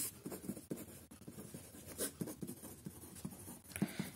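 Pen writing on ruled notebook paper: a faint, irregular run of short scratches as words are written out.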